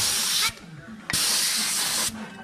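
Compressed air hissing loudly out of an air hose fitting at a large pneumatic impact wrench. The hiss cuts off suddenly about half a second in and starts again about a second in for nearly a second.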